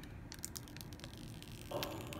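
Clear plastic protective film being picked at and peeled off the glass back of a new iPhone 8, giving faint, scattered crackles and small clicks.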